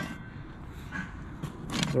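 Light handling of kitchenware being lifted out of a cardboard box: a few soft clicks near the end, over a low steady background rumble.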